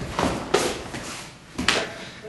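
Three short, sharp slaps and thuds with fabric rustle between them, from two people in martial arts uniforms working through a self-defense technique on a training mat.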